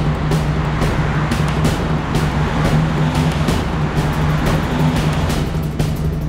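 Dramatic TV background score: a steady low drone under rapid, repeated percussive hits, with a dense rushing layer beneath.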